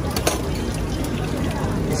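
Steady background noise of a busy street-food market, with faint voices and a couple of light clicks shortly after the start.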